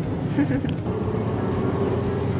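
Car cabin noise while driving: a steady low rumble of the engine and tyres heard from inside the car.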